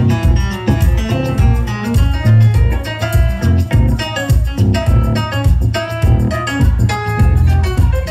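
A live rock band playing an instrumental passage: electric guitar and keyboard over a heavy bass-and-drum beat, with a tambourine.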